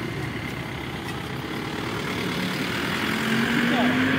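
Road traffic noise, with a heavy vehicle's engine note rising and getting louder near the end as a bus drives past close by.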